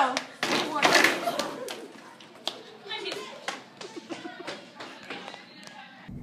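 Voices with many sharp, irregular taps and knocks, thickest in the first second and thinning out after.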